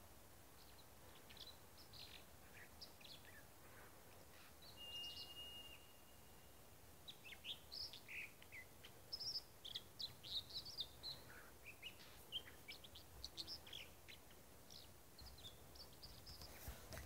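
Faint, high chirps of small songbirds over a quiet background, scattered at first and busier from about seven seconds in. About five seconds in there is one steady whistled note lasting about a second.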